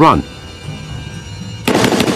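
Soft low music, then about 1.7 s in a sudden loud burst of rapid gunfire, a dramatised sound effect of a volley.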